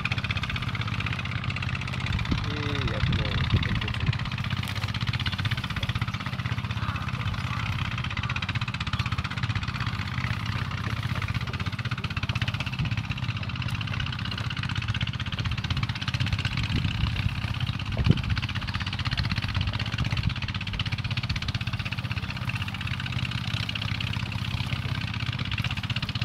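A steady low mechanical drone, like a motor running, with faint voices now and then and one sharp knock about eighteen seconds in.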